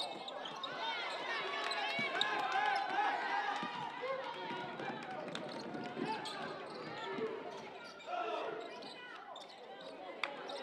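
Basketball game sound on a gym court: the ball bouncing as it is dribbled, with players' voices and shoe squeaks on the hardwood.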